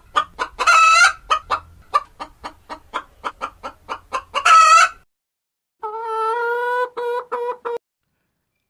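Hens clucking in a quick run, about five clucks a second, with two louder drawn-out squawks. After a short gap a rooster crows, one steady call of about two seconds.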